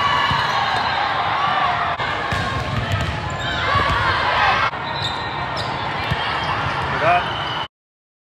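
Indoor volleyball rally sounds in a gym: players and spectators shouting and calling out over hall noise, with thuds of the ball being played. It comes in short clips spliced together, with abrupt changes about two seconds in and near the middle, and cuts off to silence just before the end.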